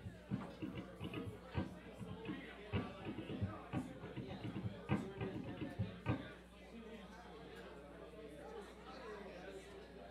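Indistinct crowd chatter with a run of sharp knocks and low thumps through the first six seconds, after which only the quieter chatter goes on.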